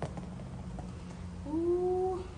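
Foam workout dice landing and tumbling on a concrete floor: a click as they hit, then a few faint knocks. About one and a half seconds in, a louder, drawn-out voice-like call, slightly rising in pitch and lasting under a second.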